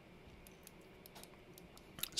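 A series of faint clicks from the push buttons of a Sony SRS-XB100 speaker being pressed one after another; the clicking is the sign that the buttons are seated and working after reassembly.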